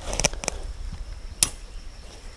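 Clicks from a front-sight adjustment tool working an AK-47's front sight post, drifting it sideways for windage: a couple of clicks near the start and one sharp click about one and a half seconds in.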